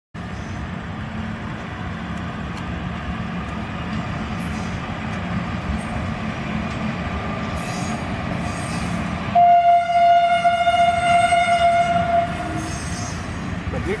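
WAG-5HA electric locomotive and its parcel vans passing at about 60 km/h: a steady rolling rumble of wheels on rail, then about nine seconds in a single horn blast of about three seconds, one steady note with overtones.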